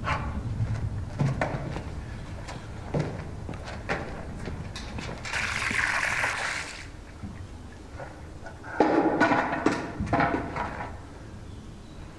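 Water poured from a bucket onto a stone floor, splashing for about a second and a half about five seconds in. Short knocks and steps come before it, and some louder sounds follow at around nine to ten seconds.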